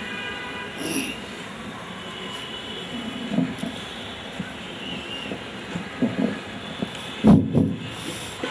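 Steady background noise of an open-air gathering, with faint indistinct voices in it, and a brief loud bump about seven seconds in.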